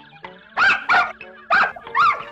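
A Dalmatian puppy barking at a man in four short, high yaps. Quiet background music plays underneath.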